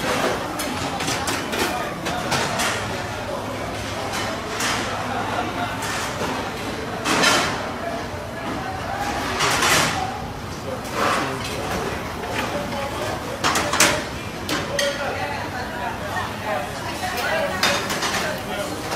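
Busy commercial kitchen: dishes, plates and metal pans clinking and clattering again and again, with several louder clatters, over background voices and a steady low hum.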